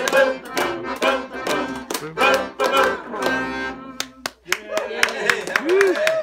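Piano accordion playing the closing chords of a lively song, with steady hand-clapping keeping the beat; the music stops about three and a half seconds in, followed by scattered clapping and voices.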